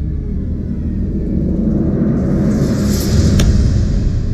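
Low rumbling drone in the soundtrack that swells, with a hissing whoosh building over the second half and one sharp hit about three and a half seconds in.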